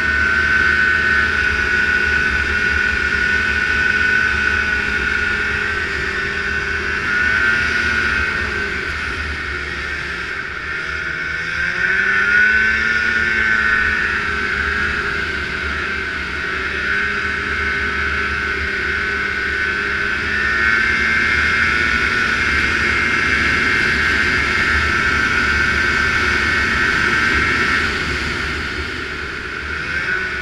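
Snowmobile engine running at a steady high pitch under way across snow. It eases off about ten seconds in and revs back up about a second later, with a low rumble beneath.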